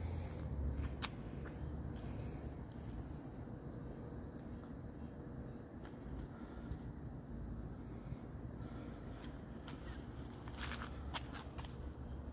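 Low, steady outdoor rumble with light handling scrapes and a few clicks from a handheld camera moving close along a parked car. A short scraping rustle comes near the end.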